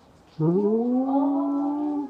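A woman's voice holding one long drawn-out note, starting about half a second in, sliding up in pitch at first and then held steady for about a second and a half.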